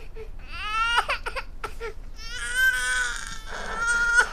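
Young child crying: a rising wail about half a second in, short broken sobs, then a long held cry and another wail starting near the end.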